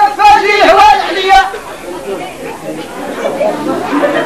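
Voices: a loud, high voice with a wavering pitch for about the first second and a half, then quieter chatter of several people, with no drumming.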